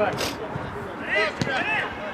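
Men's voices calling out across a football pitch, with a single thud of a football being kicked about midway through.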